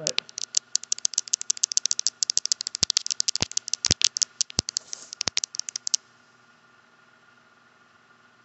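Long fingernails tapping rapidly on a phone, a fast run of sharp clicks of more than ten a second that stops suddenly about six seconds in.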